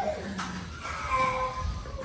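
A small child crying: a short falling wail, then a longer drawn-out one.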